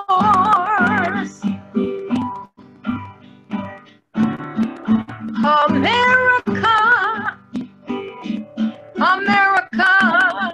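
Acoustic guitar strummed in a steady rhythm, with a voice singing a wavering melody in phrases over it: one at the start, one about six seconds in and one near the end.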